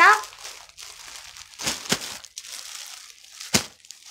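Clear plastic bags around folded clothes crinkling as they are handled and set down, with a few sharp crackles, the loudest near the end.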